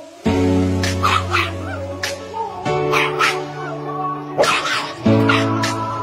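A small black-and-tan puppy yapping and barking repeatedly, about ten short yaps spread over the few seconds, over background music of long held chords.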